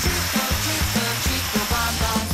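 Upbeat background music with a steady beat, over a continuous rattling clatter of hundreds of dominoes toppling in a chain reaction.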